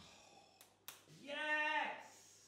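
A man's drawn-out "ooh" of delight, its pitch rising and then falling, just before "yes". It comes after two short knocks as the Dutch oven lid is set down.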